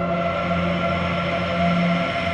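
Background music of sustained, held tones over a low drone.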